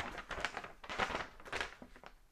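Paper leaflets being handled: a few short, quiet rustles and light taps.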